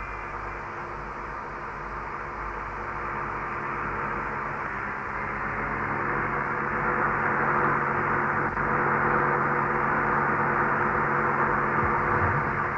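A moving car's steady running noise, heard from inside the cabin: an even rush with a low hum, slowly growing louder.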